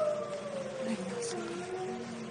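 A dog whining: one long high whine that slides down in pitch, then a lower, shorter whine near the end.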